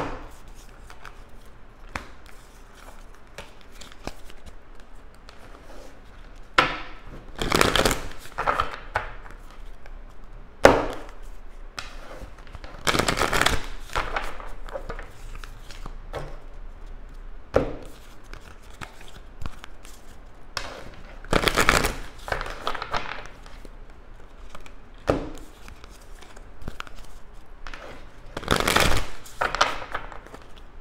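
A tarot deck being shuffled by hand: bursts of cards rustling and sliding against each other, a second or two long and a few seconds apart, with softer handling of the deck between.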